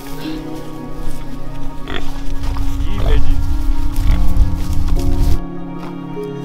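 Pigs grunting loudly for about three seconds in the middle, over steady background music.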